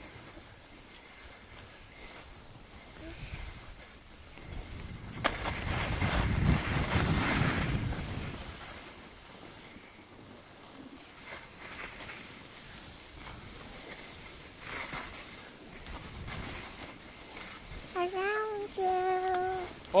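Skis sliding over packed snow, a low steady hiss, with a louder stretch of scraping about five seconds in that fades out by eight seconds.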